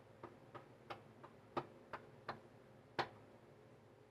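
Faint, light clicks and taps of tarot cards being handled on a glass table: about nine in all, roughly three a second, the loudest about three seconds in.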